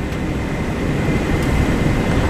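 Steady rumble of road and running noise inside the cabin of a Marcopolo Paradiso 1800 DD G8 double-decker coach on a Volvo B450R chassis, under way, with a faint thin whine above it.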